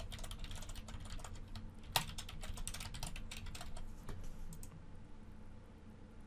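Computer keyboard typing: a quick run of keystrokes, with one louder key press about two seconds in, thinning out after about four and a half seconds. The keys are being hit to retype a username and password that were mistyped.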